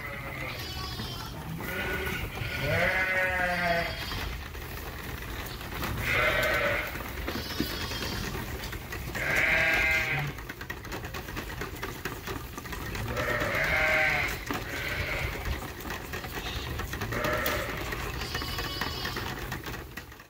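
Sheep and lambs bleating, about eight separate calls spread through the time, over a steady low hum.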